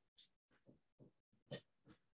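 Near silence, broken by a few faint, brief sounds; the loudest comes about one and a half seconds in.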